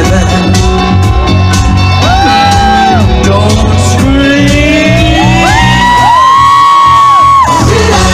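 A live pop band plays with a steady beat as a singer holds long vocal notes that bend up and down, with crowd shouts and whoops.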